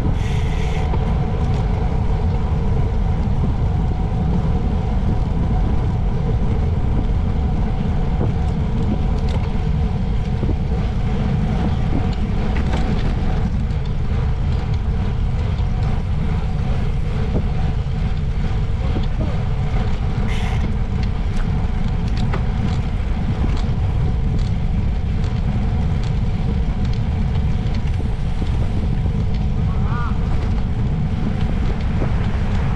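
Steady wind rushing over the microphone of a camera riding on a moving bicycle, with road and tyre noise from riding on asphalt underneath. Two short high hisses stand out, one near the start and one about twenty seconds in.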